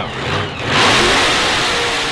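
Chevrolet Corvette sports-car engine revving and accelerating hard as a recorded sound effect. It swells suddenly about half a second in, then slowly fades.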